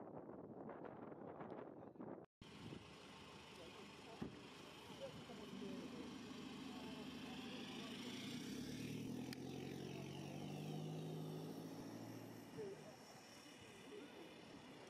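A BMW coupe's engine as the car pulls away and passes: the note builds about halfway through, holds for a few seconds and drops away near the end. A man's voice is heard briefly at the start.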